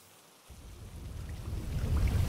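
A low, thunder-like rumble fades in from near silence about half a second in and grows steadily louder.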